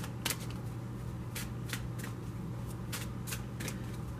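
A deck of oracle cards being shuffled by hand: a run of short, irregular clicks as the cards slap and slide together.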